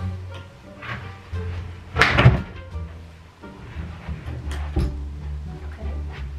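A box spring being shifted on a wooden bed frame, with one loud bump about two seconds in, over background music.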